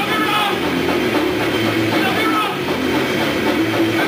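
Grindcore band playing live, guitars and drums, loud and steady throughout.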